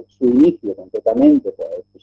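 A man talking, his voice garbled by a video-call link so the words can't be made out, with a low steady hum underneath.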